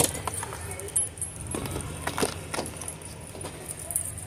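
Light metallic jingling and scattered clicks from a charm bracelet on the hand holding the phone, over a steady low hum of store ambience.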